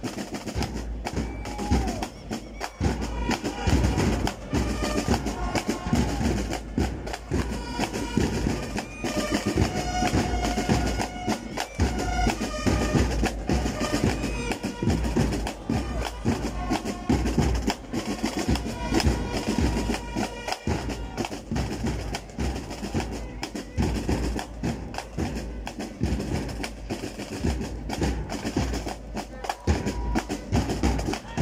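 Drum-heavy band music: fast, dense drumming with a high pitched melody played over it.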